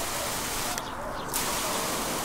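Water jetting from a pistol-grip spray nozzle on an expandable garden hose under full pressure: a steady hiss that drops away briefly about a second in.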